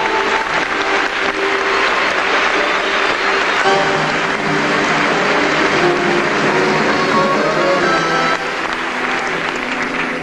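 Theatre audience applauding over the orchestra as a musical number ends.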